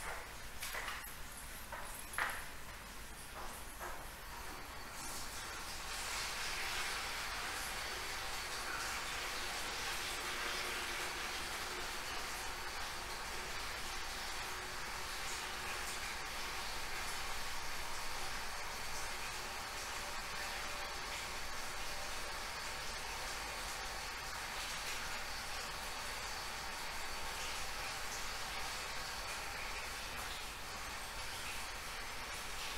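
A few knocks and clatters, then from about five seconds in a steady rush of tap water running, as a bucket is filled with clean water for washing the floor.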